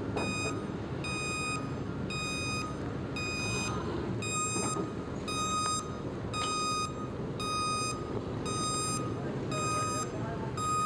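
Vehicle reversing alarm beeping steadily, about one beep every 0.8 seconds, over a low rumble of engines and traffic.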